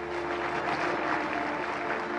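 A crowd applauding over steady background music.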